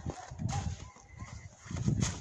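Footsteps crunching through deep fresh snow. A few faint short animal calls, like clucks, come early on.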